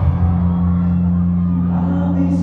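Live concert music played loud over a hall's PA system, a steady low bass note held through most of it, with audience voices over the top.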